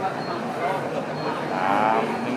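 People's voices murmuring in a large hall, with one drawn-out voiced call near the end.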